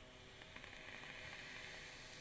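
A drag on a Drop Dead rebuildable dripping atomizer: a faint, steady hiss of air drawn through its restrictive airflow.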